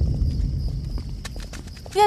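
A deep, low rumble fading away, with a few light taps in the second half.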